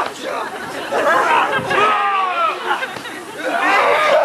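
Several people's voices calling out in short, high, sliding cries and exclamations, with no clear words.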